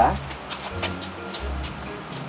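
Spot-welded thin steel sheet being bent back by hand, with a quick run of small clicks and creaks about half a second to a second in.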